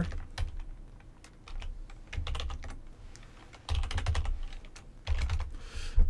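Typing on a computer keyboard in several short bursts of keystrokes with pauses between, as a terminal server is stopped with Ctrl+C and restarted from the command line.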